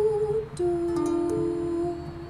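A woman humming two long held notes without words, the second lower than the first, over a softly strummed ukulele.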